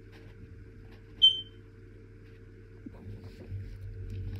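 Low steady hum under the pause, broken about a second in by one short high-pitched squeak. Near the end, faint rustling and light knocks as the paper is shifted and the hand with the marker moves back onto the page.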